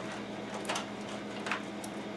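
Bundled computer power-supply cables being handled and pushed into a PC case: a few short, faint clicks and rustles as the wires brush the metal case, over a steady low hum.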